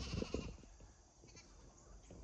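A phone being handled and turned around: a few low knocks in the first half second, then faint outdoor background.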